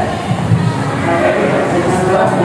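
Many students talking at once in a classroom during group work: a continuous babble of overlapping voices with no single voice standing out.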